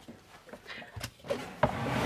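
Folding third-row seats of a Land Rover Defender 110 being pulled up from the cargo floor by their straps: a few light clicks and knocks from the seat mechanism, then a louder rustle and scrape as the second seatback is pulled up near the end.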